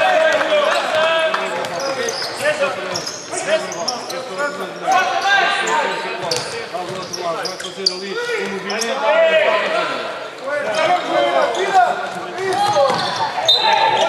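Basketball being dribbled and bounced on a wooden court during live play, with players and the bench calling out throughout, all echoing in a large sports hall.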